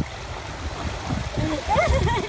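Bare feet splashing through ankle-deep water as a small child and an adult wade in the shallows, with a brief high voice sound near the end.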